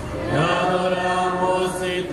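A man's voice chanting a Spanish liturgical prayer through loudspeakers. It slides up to a note a moment in and holds it steady in long sung vowels.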